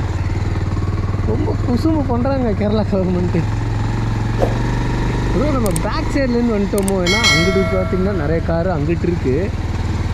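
Motorcycle engine running steadily at low riding speed, with a person talking over it. A brief ringing tone sounds about seven seconds in.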